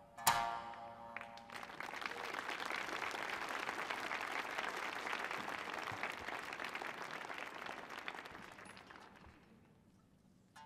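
A last plucked Tsugaru shamisen note rings out and decays in the first second. Audience applause follows and holds steady for several seconds, then fades away near the end.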